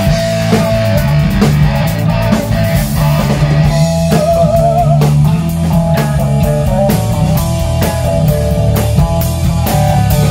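A rock band playing instrumentally in a small rehearsal room: drum kit keeping a steady beat, electric bass underneath, and electric guitar holding long lead notes with vibrato.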